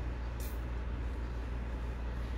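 Steady low background hum with a faint even hiss, and a single short click about half a second in.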